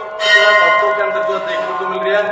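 Temple bell ringing: a fresh strike about a quarter second in, its tone ringing on steadily through the rest.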